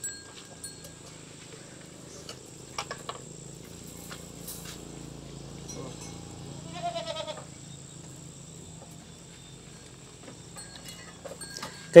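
Faint clicks and knocks of wooden roof poles being handled on a brick wall, with one short bleating call from a farm animal about seven seconds in.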